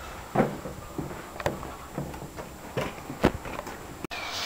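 A few short knocks and clicks of handling noise in a small room, about four spread over the few seconds.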